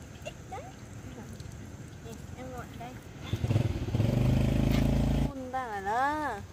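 A motorbike engine running loudly close by for about two seconds past the middle, then cutting off suddenly. High sing-song voices rise and fall before and after it.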